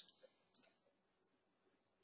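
A single faint computer mouse click about half a second in, otherwise near silence.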